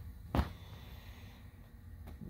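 A single short knock about half a second in, over faint low background hum.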